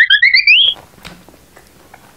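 Comedy sound effect: a fast-warbling tone climbing steeply in pitch that cuts off abruptly less than a second in, leaving only faint room sound with small clicks.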